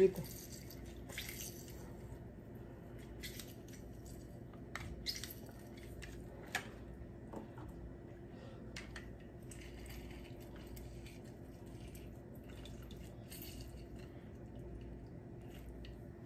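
Hand-held lemon squeezer pressing lemon halves over a blender jar: scattered faint clicks and drips of juice, the loudest click about six and a half seconds in, over a steady low hum.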